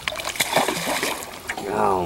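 A small sturgeon being released over the side of a boat, splashing back into the river with a quick run of short splashes and splatter.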